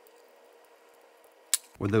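A faint steady hum, then one sharp click about one and a half seconds in, from handling the metal microscope stand and base plate during assembly.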